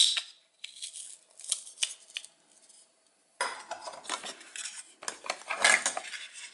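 Wooden toy food pieces clacking and rattling against each other in a plastic bowl. There are a few separate knocks in the first two seconds, a brief pause, then a longer stretch of clattering as the pieces are shifted about. It opens with the tail of a short velcro rip as a toy orange's halves are pulled apart.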